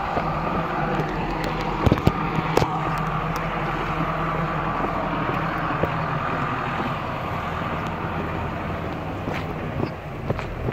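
Engine of a Jinli tracked machine running steadily, with a few sharp knocks about two seconds in.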